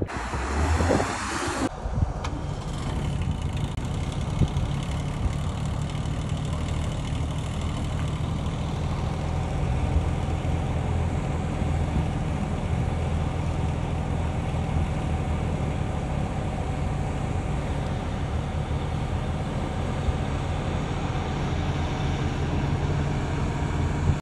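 Large coach's engine idling steadily, a low, even hum, after a brief burst of noise at the start.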